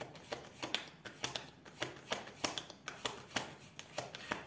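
Tarot cards being handled and shuffled on a wooden table: a quiet run of sharp, irregular card clicks and snaps, about four a second.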